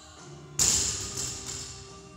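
Loaded barbell with rubber bumper plates dropped from overhead onto a rubber gym floor: one loud crash about half a second in, then a couple of smaller bounces as it settles.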